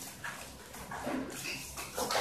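A dog whimpering faintly in a few short cries.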